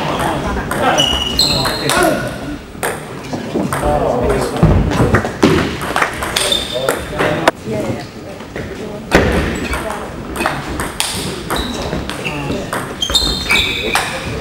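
Table tennis rally: the ball clicking sharply off the bats and the table, again and again at an uneven pace, with voices talking in the hall.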